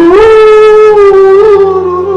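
A man singing one long held note, sliding up into it at the start, over piano accordion accompaniment.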